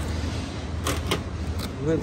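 A hand handling a cardboard box, making a few short knocks and scrapes about a second in, over a steady low hum.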